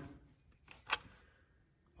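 Quiet pause with one short, sharp click about a second in.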